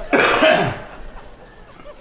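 A man coughs once: a short, harsh cough right at the start, lasting under a second.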